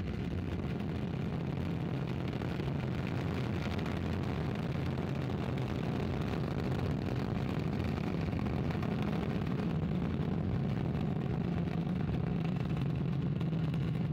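Ariane 5 ECA rocket at full thrust during its climb just after liftoff, its Vulcain main engine and two solid rocket boosters giving a steady, deep rumble that grows slowly louder.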